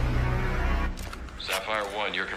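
Action-film soundtrack: music under a dense, rumbling noise that drops away about a second in, followed by a voice near the end.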